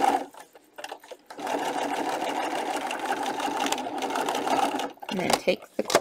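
Bernina sewing machine stitching a seam. It stops just after the start, pauses for about a second with a few light clicks, then runs steadily for about three and a half seconds before stopping.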